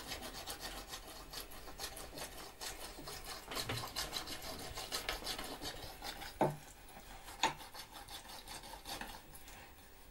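Foley props worked by hand: many rapid, irregular scraping and rubbing strokes, with two louder knocks about a second apart past the middle, dying away near the end.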